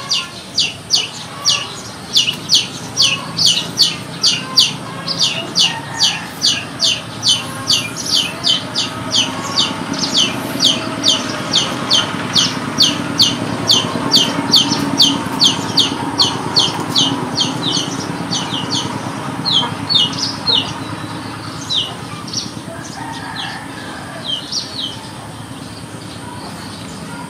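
A chick peeping fast and over and over, short high-pitched peeps about two a second, thinning to scattered peeps over the last third. A low steady hum runs underneath and swells in the middle.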